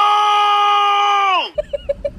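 A shouted voice holding one long, drawn-out vowel, the stretched "thoooose" of the "What are those!" meme clip. It stays on one high pitch, then drops and cuts off about a second and a half in.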